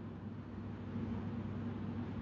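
A pause in speech: faint steady background hiss with a low hum.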